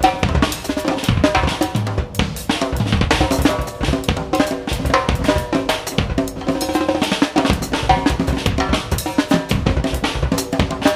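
Experimental free-jazz rock recording: a drum kit played freely in dense, irregular hits across snare, kick and cymbals, with guitar through a bass amp and electric bass sounding scattered notes underneath.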